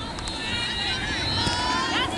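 Indistinct shouts and calls from players and spectators, several raised voices overlapping, over a low steady background rumble.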